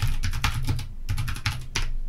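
Typing on a computer keyboard: a quick, uneven run of key clicks that stops shortly before the end.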